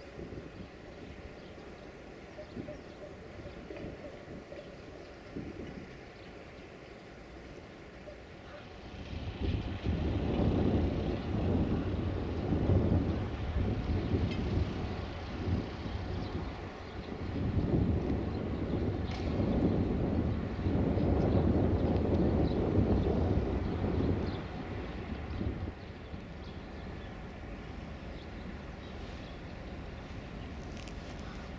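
Wind gusting across the microphone: a low rumble from about nine seconds in, swelling and fading unevenly and dropping away near twenty-six seconds, over faint background noise.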